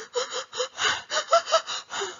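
A voice acting out sobbing: a quick run of breathy, gasping sobs, about four or five a second.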